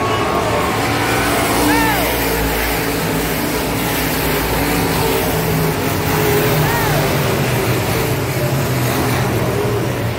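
Engines of dirt-track sport mod race cars running at racing speed around the oval, with cars passing close by.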